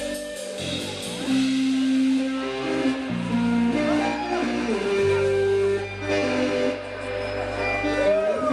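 Live indie-pop band playing an instrumental passage with no singing: electric bass holding low notes that change every second or two, under sustained keyboard and guitar parts with bending notes on top.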